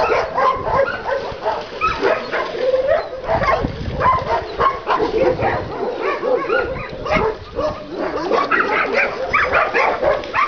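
Several dogs barking, their barks overlapping in a constant chorus with no pause.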